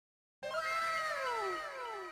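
Intro sound effect: a pitched note with a rich tone that starts suddenly less than half a second in and slides steeply downward, repeated by an echo that fades away.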